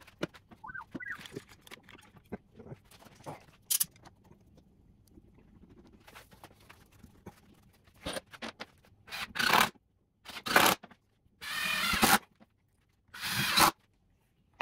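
Faint clicks and light knocks of wood and clamps being handled, then four short, loud rasping bursts about a second apart as a bar clamp is ratcheted tight over a freshly glued block on a wooden frame.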